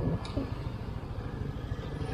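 Motor scooter engine running at low riding speed, heard as a steady low rumble mixed with wind on the camera's microphone.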